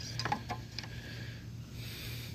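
A few faint clicks in the first second as the plastic dipstick cap is pushed back into the mower engine's oil fill tube, over a quiet steady low hum.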